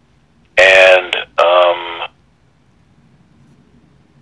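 Speech only: a voice speaks briefly, thin like a telephone line, then a pause of near silence.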